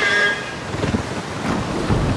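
Dragons flying overhead, in film sound design: a high shriek fading away at the start, then low rumbling whooshes over a steady wind-and-surf bed.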